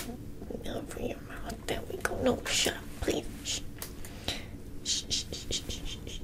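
Soft close-microphone whispering in short breathy hisses, several in quick succession near the end, with a few faint clicks.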